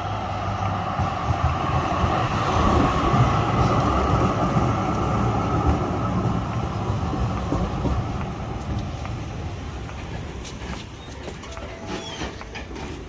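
Articulated high-floor tram running in along the rails and braking to a stop at a platform: a low rumble of wheels on track with a steady whine, loudest a few seconds in as it draws alongside, then dying down as it slows. A few sharp clicks come near the end.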